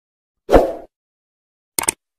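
Intro sound effects for a subscribe-button animation: a short pop with a low thud about half a second in, then three quick mouse-click sounds near the end.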